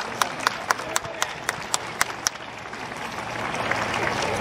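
Football supporters clapping in a steady rhythm, about four sharp claps a second, over general applause and crowd voices; the rhythmic claps stop a little over two seconds in while the looser applause goes on.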